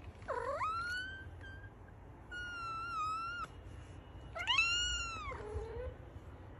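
Fluffy white longhaired cat meowing three times, each meow long and high-pitched. The first rises, the second holds nearly level with a slight wobble, and the last and loudest arches up and then drops low at its end.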